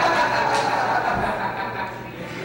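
A man's drawn-out vocal sound through a handheld microphone, fading over the first second or so, then low room noise.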